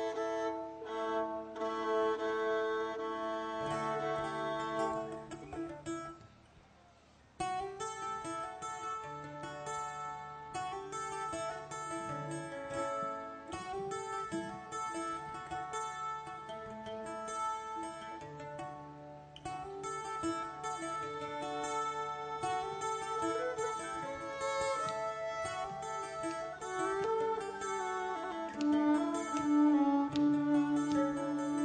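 Live acoustic folk band playing an instrumental introduction: plucked acoustic guitar with a melody in held notes. It breaks off briefly about six seconds in and then resumes.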